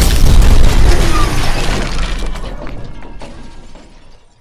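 Sound effect of a television screen being smashed: a heavy booming crash with glass shattering, the breaking glass and rumble dying away over about three seconds, with one small extra crack near the end.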